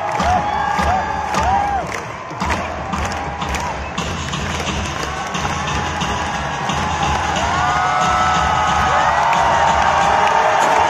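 Large grandstand crowd cheering and shouting over music from loudspeakers. Early on come quick short shouts and sharp claps; in the second half the crowd swells with long drawn-out calls.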